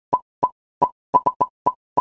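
A cartoon-style 'plop' sound effect repeated eight times at uneven intervals: short, identical, slightly pitched pops with dead silence between them.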